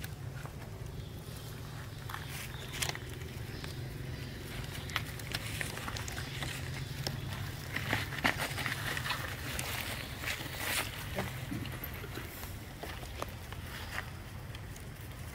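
Macaques moving over dry leaf litter: scattered crackling rustles, with short high monkey calls clustered about eight seconds in, over a steady low hum.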